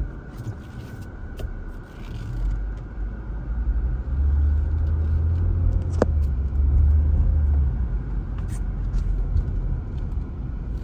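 A 2020 Chevrolet Equinox heard from inside its cabin while driving slowly, a low engine and road rumble that swells noticeably from about four seconds in until nearly eight seconds. A sharp click comes about six seconds in.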